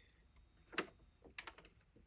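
Faint taps and clicks of fingers pressing a piece of tape down over paper on a heat press: one tap just under a second in, then a few softer clicks around a second and a half.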